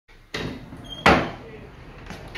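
A door being worked: a sharp knock about a third of a second in, then a louder bang about a second in as it shuts, fading away briefly.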